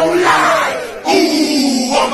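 Loud group shouting, with one long held yell starting about a second in.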